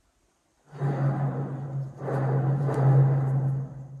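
Worn ball bearings in the jointer's cutter head spinning, starting a little under a second in: a steady low hum with a rough grinding rumble over it, very noisy, like a freight train. It is the sound of bearings that are worn out.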